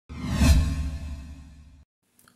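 Whoosh sound effect: a single swell that peaks about half a second in, with a deep low rumble under it, then fades and cuts off abruptly near the end.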